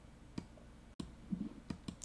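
Several faint, sharp clicks, about five spread unevenly over two seconds, each one short and separate.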